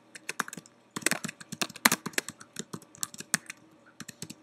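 Typing on a computer keyboard: a quick, irregular run of key clicks as a line of text is typed out, with a short pause about a second in.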